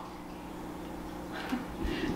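Quiet indoor room tone with a faint, steady low hum.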